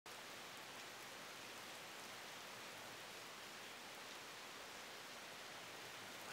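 Faint steady hiss of noise, even throughout, with no distinct events.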